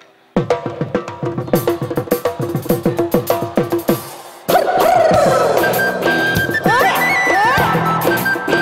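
A live Bihu band starts a tune: rapid drum strokes come in sharply just after the start and play alone for about four seconds. Then the full band enters, with a flute melody over the drums.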